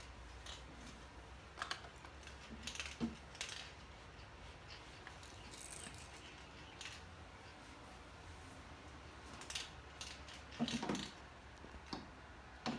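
Scattered light clicks and knocks of small plastic toys being handled and bumped by a toddler, a few irregular taps over a low steady hum, with a short flurry near the end.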